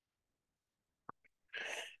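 Near silence in a pause between spoken sentences, with one faint short click about a second in, then a man drawing a breath just before he speaks again.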